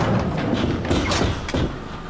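Thuds and knocks over a steady low rumble.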